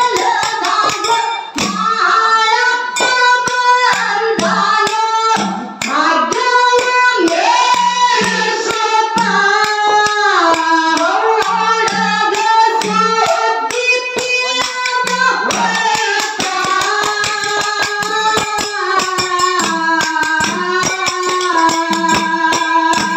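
Kannada folk dollu-song singing: a woman's voice sings a melody over fast, steady strokes of small brass hand cymbals and a repeating low drum beat.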